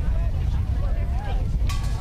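Wind rumbling on the microphone, with the indistinct voices of people talking in a crowd. A short, sharp sound cuts through near the end.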